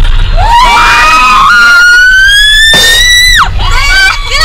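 Young women screaming on a fast amusement ride: one long scream that slowly rises in pitch and cuts off near the end, with a second voice joining at the start.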